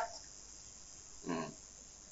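A pause in a man's talk: quiet room tone with one brief, low voiced sound, like a short hesitation grunt, a little past a second in.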